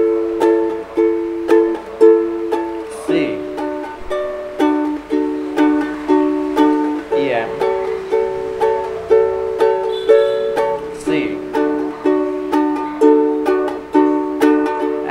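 Ukulele strummed in a steady down-and-up pattern through the chords G, C, Em and C, changing chord about every four seconds.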